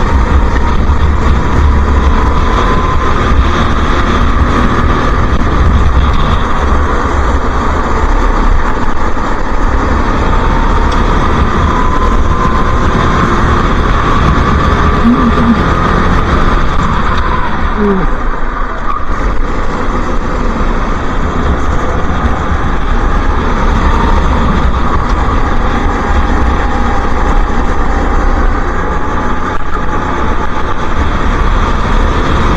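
Go-kart engine running at racing speed from an onboard camera, its pitch rising and falling gently, with heavy wind buffeting on the microphone.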